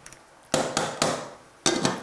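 A stick blender's metal head knocked against the rim of a stainless-steel saucepan to shake off celeriac mash: a run of sharp knocks, each with a short ring, starting about half a second in.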